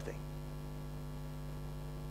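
Steady electrical mains hum in the recording, a low buzz with no change through the pause.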